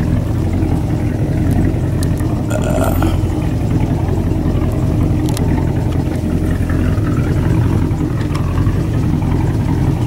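A boat's engine running steadily at constant speed, a continuous low hum.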